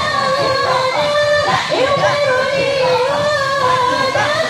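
Voices singing an Islamic devotional chant in long, wavering melismatic notes, continuous and loud, with the pitch sliding between held tones.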